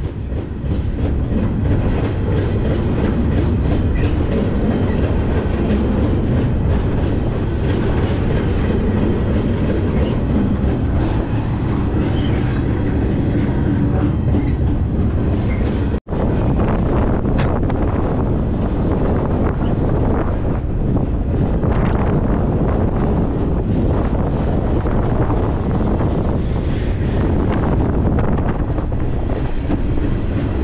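Steady, loud running noise of a moving freight train heard from aboard an intermodal well car: wheels on the rails and the car rattling along. It cuts out for an instant about halfway through, then carries on the same.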